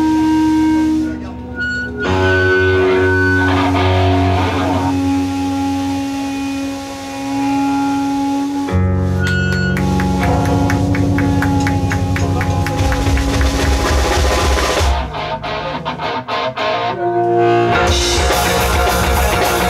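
Live pop-punk band playing amplified electric guitar, bass and drums in a loud, sustained passage. Near the end it breaks into short, choppy stop-start hits before the full band comes back in.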